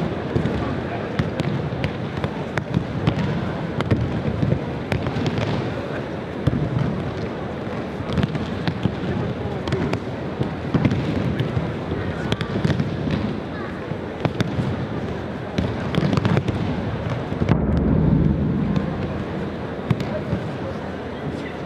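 Aikido throws on tatami: irregular slaps and thuds of bodies hitting the mats as partners take breakfalls, many pairs at once, over the murmur of a large hall. A heavier, louder stretch of falls comes near the end.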